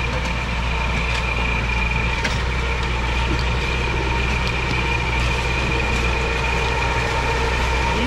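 LKT 81 Turbo forestry skidder's diesel engine running steadily while it drags oak trunks, with a steady high whine over the engine note.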